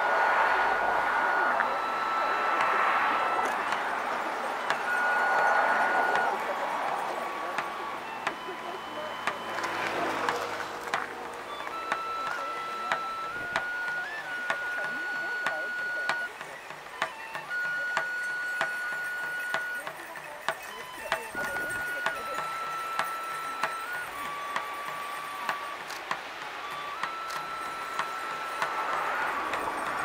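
Shinto kagura music: a transverse bamboo flute plays long held notes that step between a few pitches, with sharp percussion strikes at fairly even intervals through the second half.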